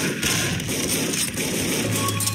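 Loud, harsh music with a dense crackling noise running through it.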